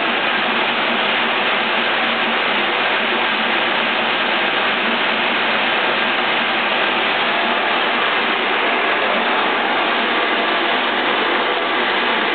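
Stanko 2L614 horizontal boring machine running, its boring bar turning in the workpiece bore: a steady, even mechanical noise.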